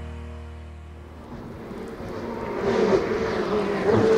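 Intro music fading out in the first second, then a Ferrari 488 Evo race car's twin-turbo V8 approaching up a hillclimb road, growing steadily louder, its engine note rising and falling.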